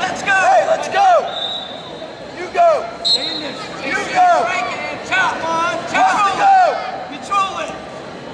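Rubber-soled wrestling shoes squeaking on the mat in short chirps, several a second, as two wrestlers circle and hand-fight, amid shouting from the crowd.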